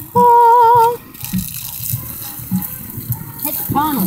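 A person's voice holds one high wavering note for under a second at the start. Then water from a garden hose sprays onto the burning bonfire logs, hissing steadily, with the wood crackling and popping now and then.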